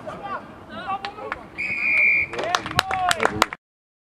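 Rugby referee's whistle, one steady blast of under a second, followed by a flurry of sharp claps and shouting voices from spectators. The sound cuts off suddenly just before the end.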